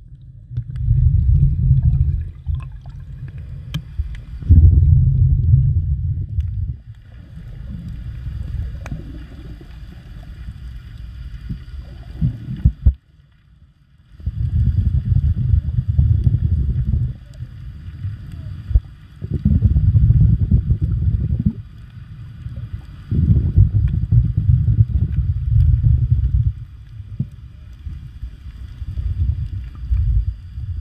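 Muffled underwater rushing of water against a submerged camera, coming in surges of two or three seconds about every four seconds, with faint steady high tones beneath. It drops to a brief near silence about halfway through.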